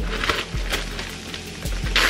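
Plastic zipper bag crinkling and rustling as it is handled, in short bursts about half a second in and again near the end, with a few light clicks.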